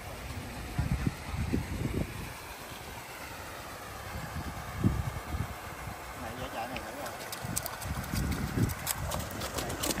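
Irregular low thuds and handling knocks, with faint voices in the background and a scatter of light clicks near the end.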